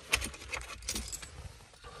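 A bunch of car keys jangling on their ring, an irregular run of sharp clinks, as they are brought to the ignition.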